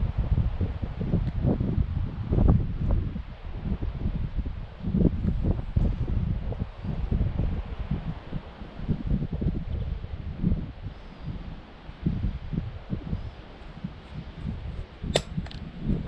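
Wind buffeting the microphone in uneven low gusts, with a few sharp clicks near the end.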